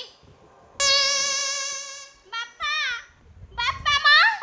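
Live stage music from a folk-theatre band: an electronic keyboard holds one long steady note for about a second and a half, then short melodic phrases slide up and down in pitch.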